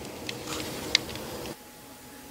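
Quiet room tone with a few faint clicks, one sharper click about a second in; the background drops quieter about one and a half seconds in.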